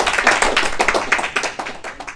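A small audience applauding, a dense patter of hand claps that thins out and fades near the end.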